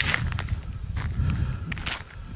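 Footsteps crunching on a gravel track, a few separate steps over a low steady rumble.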